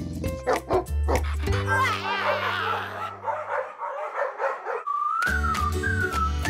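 Cartoon soundtrack music with a run of short, high, dog-like yapping cries in the middle, then a single tone that rises and falls near the end.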